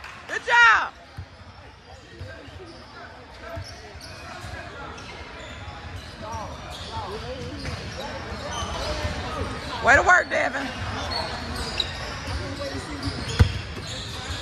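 Basketball game in a large, echoing gym: a ball bouncing on the hardwood floor over steady crowd chatter. Loud, high-pitched shouts come just after the start and again about ten seconds in, and there is a sharp thump near the end.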